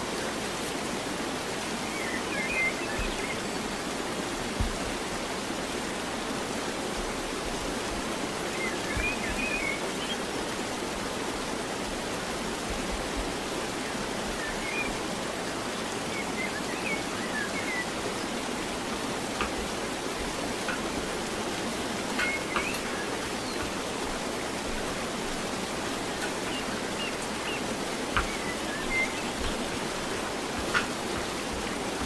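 A steady hiss of background noise, with a few soft knocks as bread dough is pressed and rolled on a floured table, and faint high chirps now and then.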